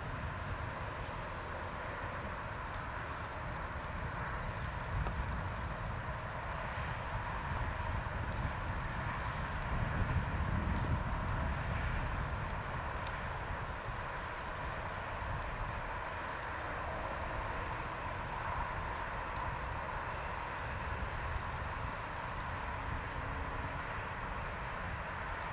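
Open-air field ambience: a steady rushing noise with an uneven low rumble, likely wind on the microphone, that swells about ten seconds in. A few faint, short, high chirps are also heard.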